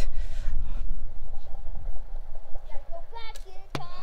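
Uneven low rumble of wind on a phone microphone, with faint distant voices about three seconds in. Just before the end comes a single sharp snap with a short thud as the arrow is loosed from the bow.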